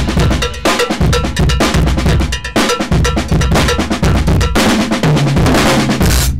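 Acoustic drum kit played hard and fast, with a dense run of drum and cymbal hits over a heavy kick-drum low end.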